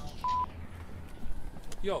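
A single short electronic beep, one steady high tone lasting about a fifth of a second.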